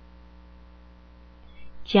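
Steady low electrical hum with a faint buzz of overtones, picked up by the recording. A voice starts just at the end.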